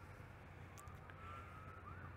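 Faint emergency-vehicle siren wailing in slow rising and falling sweeps, changing to quicker yelping sweeps near the end.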